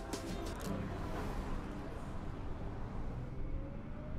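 Plucked guitar background music stops a little under a second in and gives way to a steady low rumble of road noise from a moving car.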